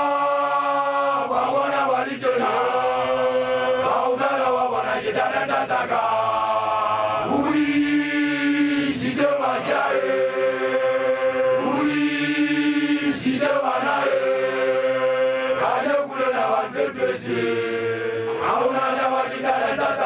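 Makoloane, young Basotho initiation graduates, singing a chant together in a group of male voices. Notes are held long and slide from one to the next, with two longer sustained notes past the middle.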